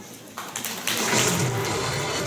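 Audience applauding, starting about half a second in and swelling about a second in.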